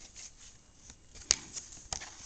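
Plastic DVD case being handled and snapped shut: light rustling, with a sharp click a little past halfway and a smaller click near the end.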